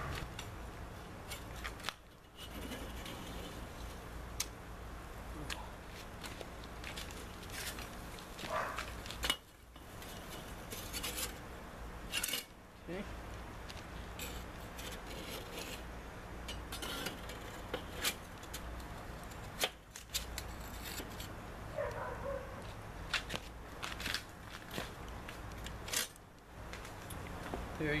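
Metal spatulas scraping and clicking against the metal cooking grate of a Weber charcoal kettle grill as two meatloaves are turned, over a steady low hum. The sound is broken by several sudden short drop-outs.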